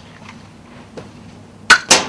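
A toy pistol fired at a balloon target: two sharp, loud cracks about a fifth of a second apart near the end, after a quiet stretch of room tone.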